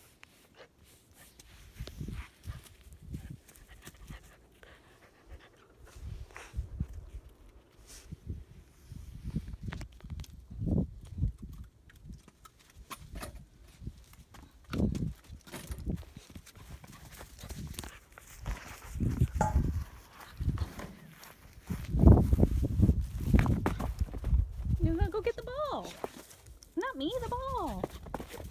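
Wind gusting on a phone microphone in irregular low rumbles, loudest a little over three quarters of the way through, with scattered knocks and clicks. A woman's voice comes in near the end.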